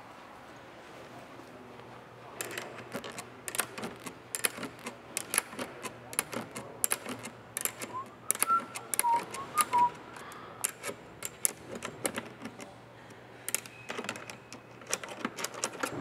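Irregular sharp clicks and rattles of a manual RV awning's metal travel-latch hardware being worked loose by hand. They begin about two seconds in.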